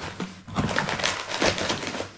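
Cardboard box being opened by hand: flaps pulled back and paper packaging rustling and scraping, with irregular small knocks and crackles.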